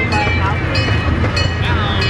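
Steady low rumble of a small ride-on passenger train running, with scattered light clatter and the voices of other riders.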